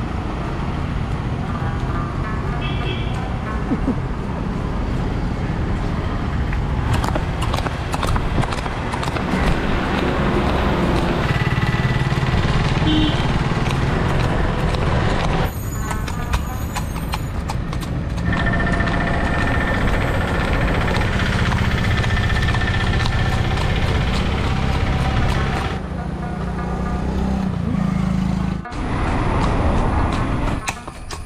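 A horse's hooves clip-clopping on a paved road.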